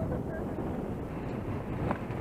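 Wind buffeting the microphone, a steady rough rushing noise.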